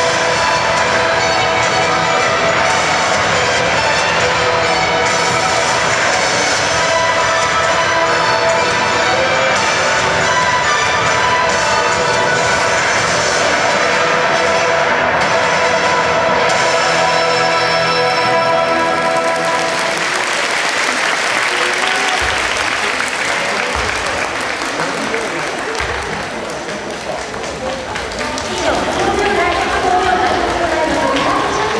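Ballroom dance music plays for about the first twenty seconds, then gives way to loud applause and cheering from a large crowd in a hall, with shouting voices near the end.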